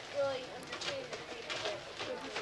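Indistinct voices talking in a room, with a few brief rustles.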